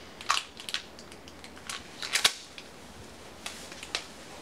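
A series of sharp, irregularly spaced clicks and taps, about half a dozen, the loudest cluster about two seconds in, over faint room hiss.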